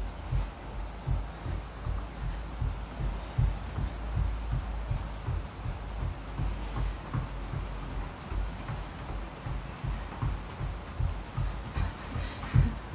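Footfalls of a person running on the spot: a quick, even rhythm of low thuds that keeps up without a break.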